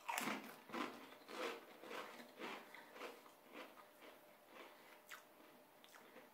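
A Pringles potato crisp bitten off, then chewed with crunches about twice a second that grow fainter as it breaks down.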